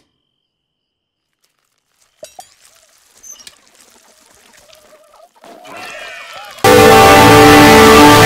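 A video game console startup sound, used as a cartoon scream, comes in suddenly about two-thirds of the way in: extremely loud and distorted, a sustained chord. Before it there is near silence, then faint scattered cartoon sounds.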